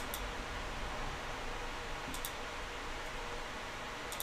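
Steady hiss of room tone with a few faint clicks from computer input as tool numbers are edited: one at the start and a quick pair about two seconds in.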